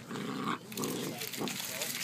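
Two golden retriever puppies vocalizing as they play-fight, a run of short irregular bursts.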